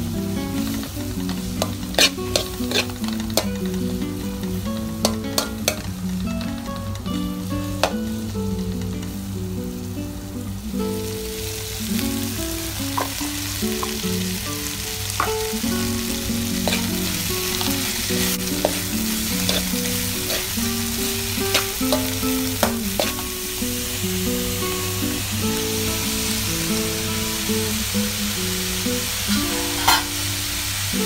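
Green beans and carrots sizzling as they are stir-fried in a hot metal pan, a metal spatula clicking and scraping against the pan. The sizzling grows louder about ten seconds in.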